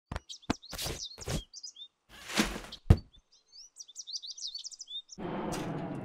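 Short high chirping calls mixed with a series of sharp knocks and thuds, then a steady low rumbling noise starts suddenly about five seconds in.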